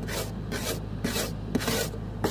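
Snow and ice being scraped off a car's frozen windshield, heard from inside the car: rapid rasping strokes about twice a second over a steady low hum.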